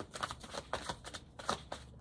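Tarot cards being shuffled by hand: a run of quick, irregular papery flicks and snaps.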